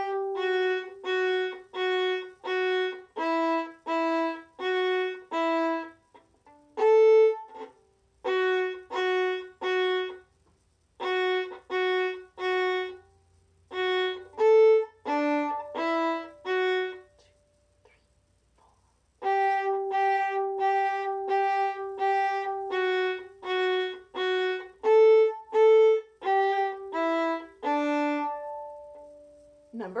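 A solo violin plays a simple beginner method-book melody in short, separate bow strokes, about two notes a second. The phrases are broken by brief rests, and a longer held note comes near the end.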